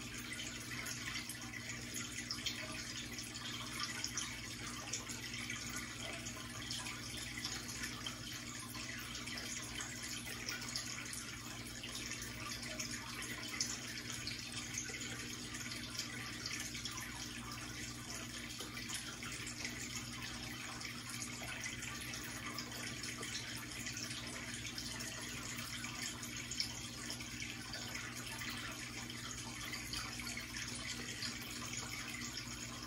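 Aquarium water trickling and splashing steadily, as from a running filter whose tank is low on water, over a low steady hum.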